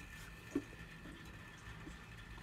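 Quiet puffing on a lit corncob pipe: a soft mouth pop about half a second in, then faint low mouth sounds on the stem.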